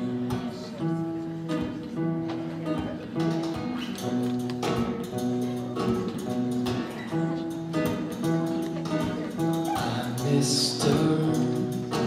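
Acoustic guitar playing the instrumental intro of a song, with a pizza box played as a hand drum tapping a steady beat.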